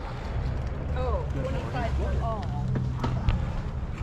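Low, steady wind rumble on the microphone under faint voices, with two light knocks about three seconds in as a plastic Casio keyboard is lifted and handled.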